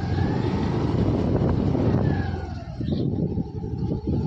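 A car running close by, with a steady engine and road noise that eases off after about two and a half seconds.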